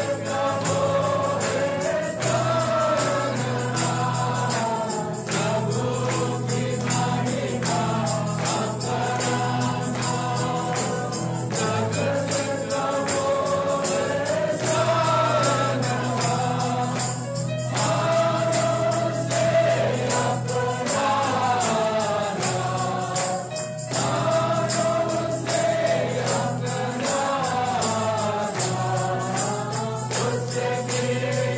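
Gospel choir music: many voices singing together in held, gliding lines over a steady bass, with rhythmic jingling percussion keeping time.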